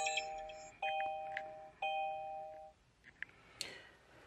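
Kia Soul EV's dashboard chime sounding three times about a second apart, each a short steady tone of two notes together, followed by a few light clicks.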